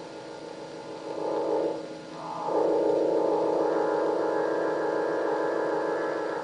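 Background film music: sustained, droning chords that dip and change about two seconds in, with a higher tone joining later.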